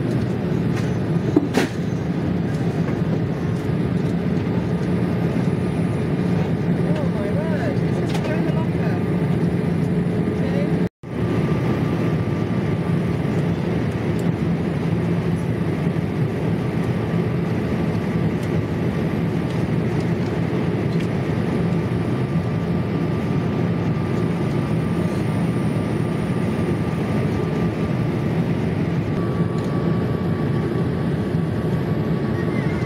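Steady in-flight cabin noise of a Boeing 787 Dreamliner: the constant low roar of its Rolls-Royce Trent 1000 engines and the airflow past the fuselage, with a few faint steady hums. The sound cuts out once, very briefly, about eleven seconds in.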